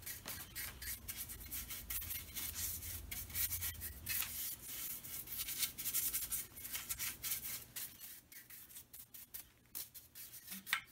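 A paintbrush scrubbing aniline dye onto a bare wooden wagon wheel: a run of short, quick rasping brush strokes that thin out and turn quieter near the end.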